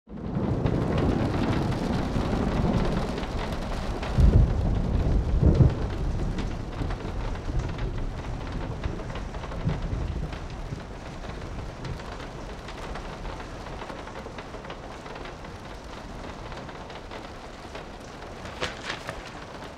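Steady rain with thunder: two loud, low rolls of thunder about four and five and a half seconds in, then the rain gradually quietens.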